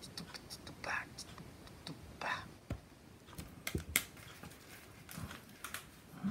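A beatbox drum beat played back faintly through earphones held up to a microphone: scattered breathy hisses, sharp clicks and a few soft thumps.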